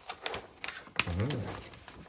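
A large glossy paper poster being handled and unfolded, giving a few sharp crackles and rustles. About a second in, a short hummed voice sound that rises and falls in pitch.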